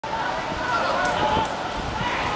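Raised voices of footballers calling out across the pitch over open-air noise, with a couple of short knocks about a second in.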